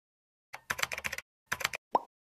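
Keyboard typing in two quick bursts of rapid clicks, then a short downward-gliding tone at the very end.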